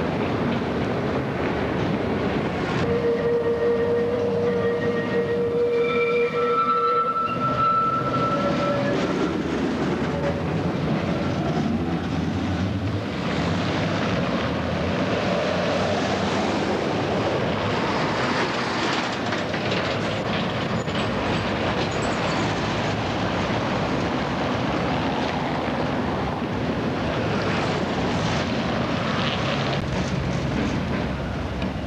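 An old Reko tram with trailer rolling over the track. A few seconds in, its wheels squeal in the curve with high steady tones. After that comes a steady rumbling run.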